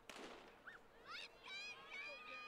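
Faint crack of a starter's pistol starting a sprint relay, followed by spectators' high-pitched shouts and cheers that rise and grow denser toward the end.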